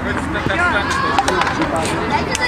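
Young footballers' voices calling out on an open pitch during a goalmouth attack, with a few sharp knocks.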